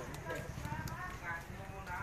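Indistinct talking in the background over a steady low rumble.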